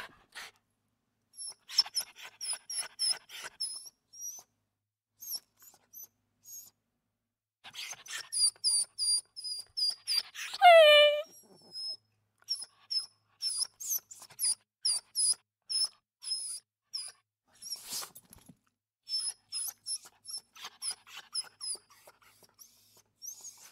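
Dog whimpering: rapid runs of short, very high-pitched squeaks, with one louder whine falling in pitch about ten and a half seconds in.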